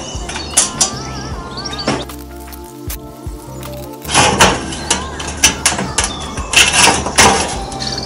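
Metal access door of a Weber Smokey Mountain smoker and wood chips knocking and clattering as the chips go onto hot charcoal and the door is refitted, with a string of sharp knocks in the second half. A wavering, warbling tone sounds in the background for the first couple of seconds.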